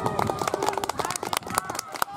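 Children's voices in the background over a run of quick, irregular light taps.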